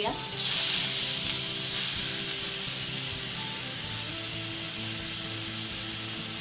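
Grated pumpkin dropped into hot ghee in an aluminium kadhai, sizzling steadily; the sizzle jumps up as the pumpkin lands and holds on.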